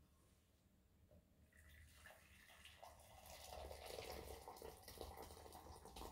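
Boiling water poured from a stainless steel electric kettle into a glass measuring cup, faint and splashing. It starts about a second and a half in and grows somewhat louder as the cup fills.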